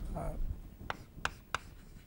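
Chalk writing on a blackboard: three short, sharp taps and strokes of the chalk against the board, about a second in.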